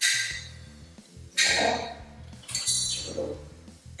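Metal jig plates clinking against each other and the pistol frame a few times as they are fitted together, over soft background music.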